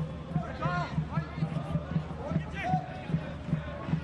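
Stadium crowd sound with a steady low drumbeat, about three to four beats a second, and faint voices over it.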